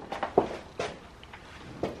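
A horse moving in its stall during a carrot stretch: about four short, soft knocks and scuffs spread over two seconds.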